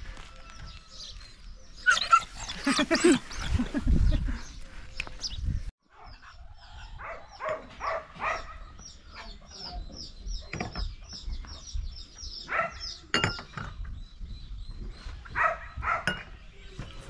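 A dog barking a few times in short bursts, with a man laughing. Then glass and porcelain tea cups clink on saucers as a small bird chirps in a steady run of high notes.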